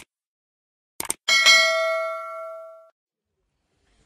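Subscribe-button animation sound effect: a click at the start, a quick double click about a second in, then a single bell ding that rings out and fades over about a second and a half.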